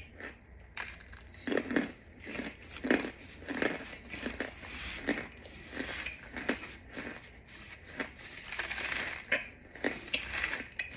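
Dry, crumbly white chunks crunching as they are bitten, chewed and broken apart, with a crinkle of plastic; a run of irregular crunches, roughly one every half second to a second.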